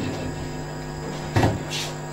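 A pause in the talk filled by a steady low electrical hum from the microphone and sound system, with one brief knock-like sound and a short hiss about a second and a half in.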